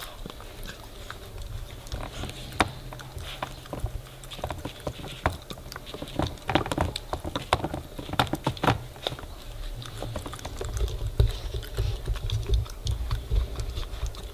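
A puppy gnawing and licking at a rubber teething toy smeared with peanut butter: irregular clicks and taps, busiest in the middle.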